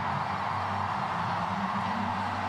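Steady background crowd noise of a football stadium crowd, an even hum with no sharp events.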